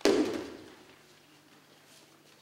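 A thrown aikido partner's body landing on the mats in a breakfall: one loud thud right at the start, fading within about half a second.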